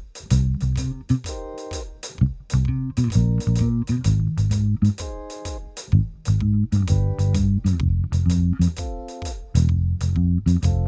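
Fender electric bass guitar played fingerstyle, a syncopated arpeggio-based line with a feel between reggae and swing, each note struck sharply.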